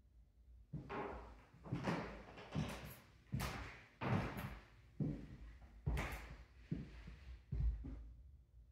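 Footsteps on a hardwood floor: a series of knocks, about one a second.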